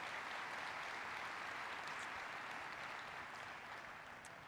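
Audience applauding steadily, dying down slightly near the end.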